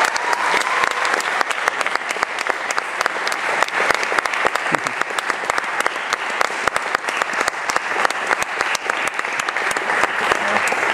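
Audience applauding steadily at the end of a piece.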